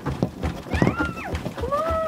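Rapid, uneven knocking and thudding, things being shaken and banged about in a simulated earthquake, with two high-pitched cries that rise and fall, one about a second in and a longer one near the end.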